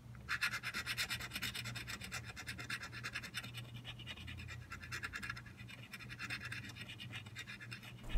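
A coin scratching the coating off a paper scratch-off lottery ticket in quick, quiet back-and-forth strokes, several a second, beginning a moment in.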